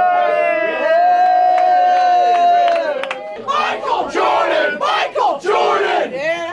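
Excited people yelling in celebration: a long held shout lasting about three seconds, then a run of short excited shouts.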